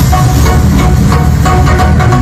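Loud music with heavy bass and a drum beat, played through a home-built speaker system of subwoofer boxes and car speakers.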